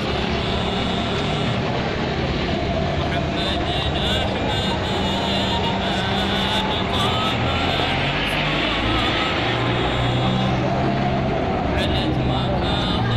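Steady street din: people's voices mixed with a continuous vehicle rumble and some music in the background.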